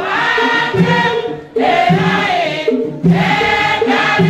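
A large group of women singing a Tiv worship hymn together, with a short break between phrases about one and a half seconds in.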